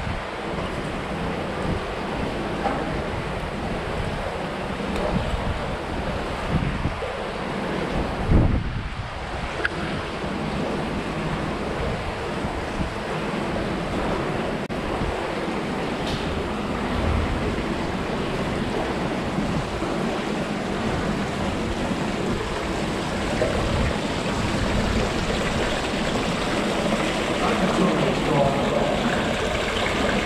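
Feet wading through shallow river water in an enclosed concrete culvert: a steady, uneven sloshing of water, with one louder thump about eight seconds in.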